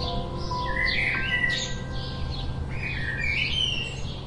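House sparrows chirping, a run of short cheeps about two a second with louder, harsher calls in the middle and near the end. Soft background music with held notes plays under them.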